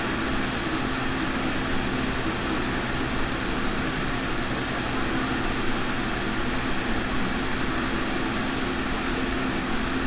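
Steady whooshing hum of a fan motor running, unchanging throughout, with a faint low hum under it.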